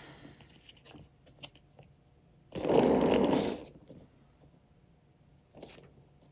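A short scraping rasp, about a second long about halfway through, as the round painting board carrying the poured ornament is turned by hand, followed by a few faint handling clicks.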